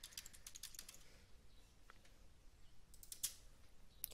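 Faint typing on a computer keyboard: light, irregular key clicks.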